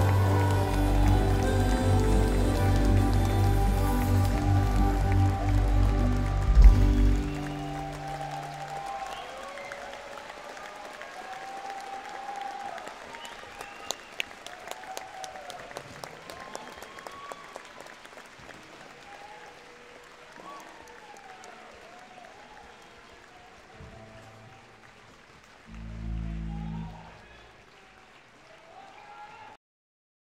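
A live band plays the final bars of a song and stops about seven seconds in, followed by an audience cheering, whistling and applauding, gradually dying away. Near the end a brief low note sounds from the stage.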